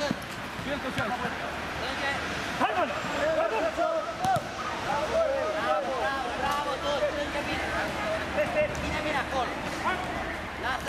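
Players shouting and calling to each other during a mini-football match, in many short overlapping calls, with occasional thuds of the ball being kicked.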